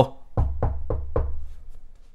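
Four quick knuckle knocks, about a quarter second apart: a mock knock on the head, as if to ask whether anyone is home.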